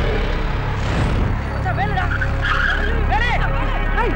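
Film soundtrack: a low sustained music drone with a whoosh about a second in, then a voice crying out in short rising-and-falling calls.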